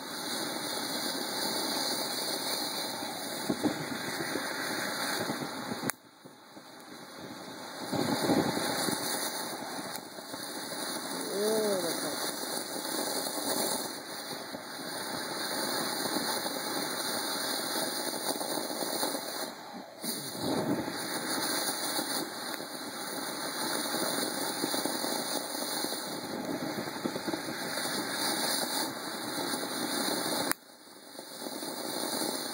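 Consumer ground fountain firework burning with a steady rushing hiss of sparks. It drops away suddenly and picks up again about six seconds in and again about twenty seconds in.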